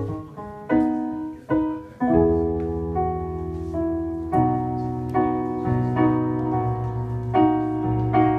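Piano voice of a digital stage keyboard playing the opening of a slow song: a few struck notes, then full chords with a low bass from about two seconds in, each chord struck about once a second and left to ring.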